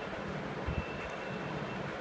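Ballpoint pen writing on notebook paper: faint, steady scratching over a background hiss, with a soft knock about two-thirds of a second in.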